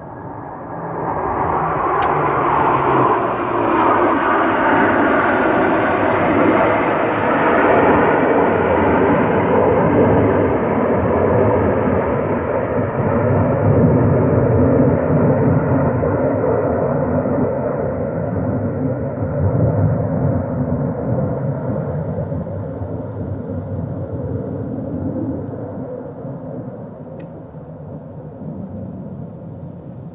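Jet engines of a five-plane formation of F/A-18 Hornets flying past: a loud roar that swells about a second in, holds, then slowly fades over the last several seconds. Its pitch drops as the jets go by.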